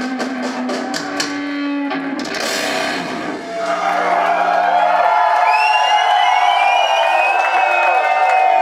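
A live rock band with electric guitars, bass and drums ends a song: the last chord rings over rapid drum and cymbal strikes, ending in a crash about two seconds in. The low notes die away over the next few seconds while the crowd cheers, whoops and whistles, growing louder.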